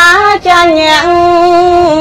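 A woman's voice chanting Khmer smot, the traditional Buddhist verse recitation. Her line wavers briefly in pitch, breaks for a moment, then holds one long, steady note from about half a second in.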